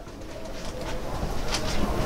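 Low rumble of footsteps on a travel trailer's floor, building up as someone walks through the cabin.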